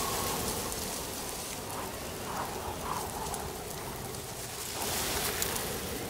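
Steady rain-like hiss, even throughout, with a few faint higher sounds about two to three seconds in.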